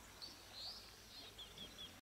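Faint bird calls: a rising chirp, then a quick series of four or five short notes near the end.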